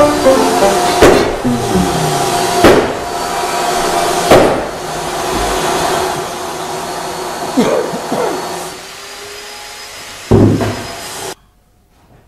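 Piano notes in a descending run, then about five loud crashes, each followed by long ringing tones. The sound cuts off suddenly near the end.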